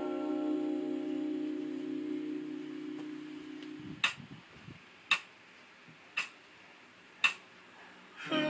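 A held keyboard chord that fades away over about four seconds, followed by four sharp clicks about a second apart marking a slow beat.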